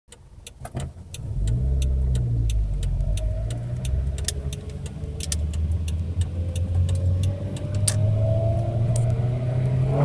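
1990 Acura Integra LS 1.8-litre four-cylinder engine heard from inside the cabin, running and slowly gaining revs. Many sharp, irregular clicks and rattles sound over it.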